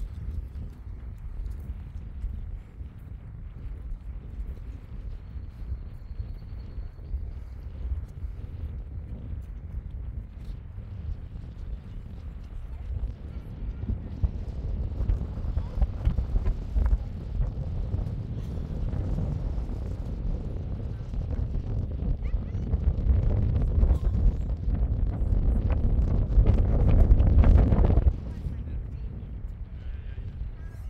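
Wind buffeting the microphone: a low, gusting rumble that swells in the second half and drops off suddenly near the end.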